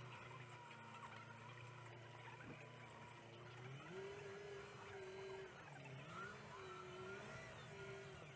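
Tractor engine heard faintly from inside the cab. Its revs rise about four seconds in, hold, and then drop back near the end.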